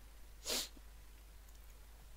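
A man sniffing once through the nose, a single short sharp breath about half a second in.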